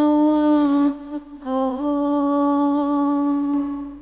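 A woman's voice singing without words, holding two long notes at nearly the same pitch with a short break about a second in, the second note slightly wavering and fading near the end.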